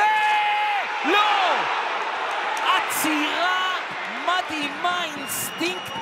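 A man's drawn-out excited cry about a second long, then more short excited shouted exclamations over steady stadium noise, as a close-range chance is missed and saved.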